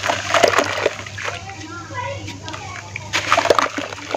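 Hands crushing lumps of wet red dirt in a bucket of water: splashes and wet crumbling in two spells, about the first second and the last second. Between them, for about a second, the splashing thins and a person's voice is heard.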